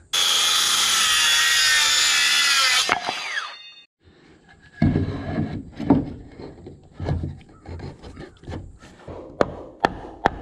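A power saw cutting wood for about three seconds, then spinning down as it is released. After a short pause, wooden knocks and thumps as a block is fitted between floor joists, and a few sharp hammer taps near the end.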